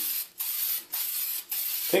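Aerosol can of dulling spray hissing in short bursts, about two a second, as it is sprayed onto a glossy plastic bag to take off the shine.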